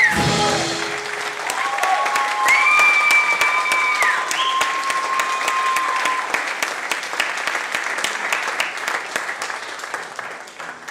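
Small audience clapping at the end of a song, with some held cheering calls over the applause in the first six seconds. The clapping thins out toward the end.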